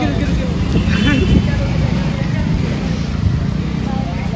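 A motor vehicle engine running close by, a steady low rumble, with brief bits of people talking about a second in.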